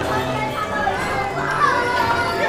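Children's voices calling and chattering over steady music playing on a running carousel.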